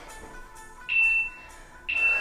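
Electronic countdown-timer beeps, two short high steady beeps about a second apart, marking the last seconds of an exercise interval, over soft background guitar music.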